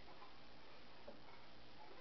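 Faint steady electrical hum and hiss with a few soft, small clicks.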